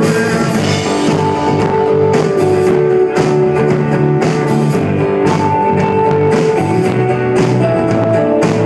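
Live folk-rock band playing an instrumental passage: strummed acoustic guitar and electric guitar over drums, with long held melody notes on top.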